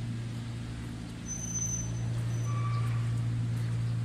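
Single-cylinder Changzhou diesel engine running steadily, belt-driving a pan concrete mixer, a low even drone that swells slightly partway through. A couple of brief high chirps sound over it in the middle.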